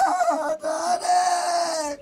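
A woman wailing in grief: a few broken, wavering cries, then one long, high, drawn-out wail that falls off and stops near the end. It is a mourning lament for a death.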